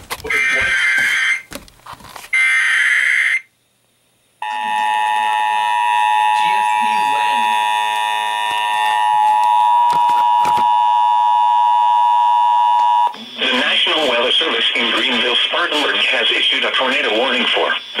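Emergency Alert System broadcast over FM radio. It opens with two buzzy SAME header data bursts, then a second of silence, then the steady two-tone EAS attention signal held for about nine seconds. The spoken tornado warning message begins near the end.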